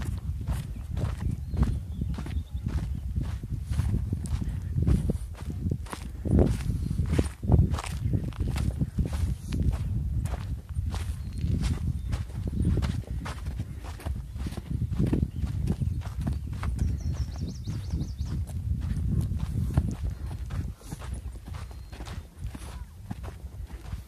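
Footsteps crunching on a sandy, rocky dirt trail, about two steps a second, over a steady low rumble.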